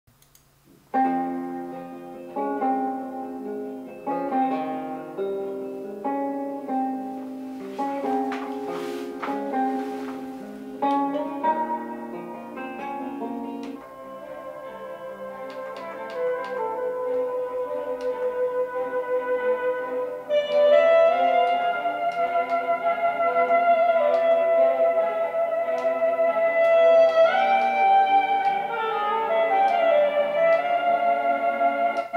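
Music played through the ViewSonic VP3268 monitor's built-in speakers, with little bass: separate plucked, piano-like notes start about a second in, then give way to longer held notes that grow louder about twenty seconds in.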